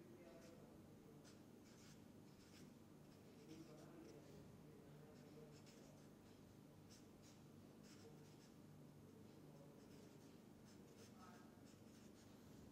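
Faint strokes of a felt-tip marker writing on paper, short irregular scratches over a low steady hum.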